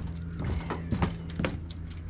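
Mechanical clicking, about two clicks a second, over a steady low hum.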